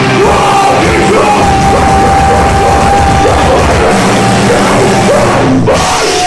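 Live rock band playing loudly, with electric guitars, drums and yelled vocals. A long held note runs from about a second in, and the music briefly breaks off just before the end.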